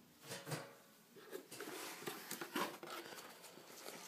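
A cardboard box being opened by hand: the lid flap scraping and rustling, with small clicks and knocks of handling.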